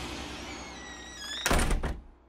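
A plank wooden door closing with a loud thud about one and a half seconds in, preceded by a few rising squeaky tones, over music that is fading out.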